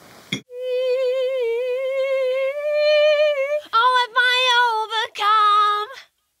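A woman singing alone without accompaniment: one long held note with vibrato for about three seconds, then a few shorter notes, and a last held note that cuts off suddenly.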